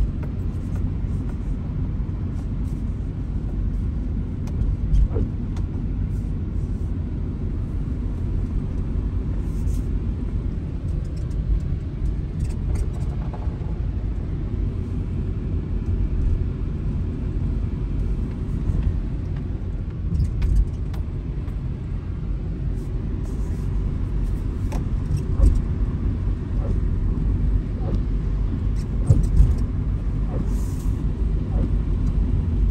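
Car driving, heard from inside the cabin: a steady low rumble of engine and tyres on the road, with a few faint ticks.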